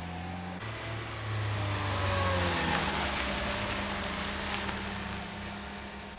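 Car engine running as the Fiat VSS prototype, fitted with Fiat Strada mechanical components, drives off. The sound swells over the first couple of seconds, the engine note falls about halfway through, and then it slowly fades.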